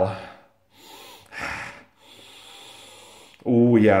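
A person sniffing a glass of beer to smell it: a short sniff about a second and a half in, then a longer, fainter breath through the nose.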